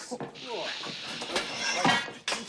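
Steady hiss of a cutting tool throwing sparks as it cuts through a floor, with shouting voices over it.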